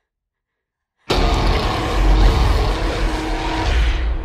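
Horror-trailer sound design: after about a second of dead silence, a loud, dense roar with a deep rumble and a few faint held tones cuts in suddenly and carries on.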